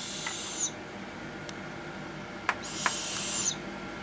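Young barred owls giving two raspy, hissing calls, each about a second long: one at the start and one just past halfway. A few sharp bill snaps come in between.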